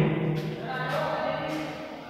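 A man's voice holding a long, drawn-out hum or vowel on one steady low pitch, fading gradually.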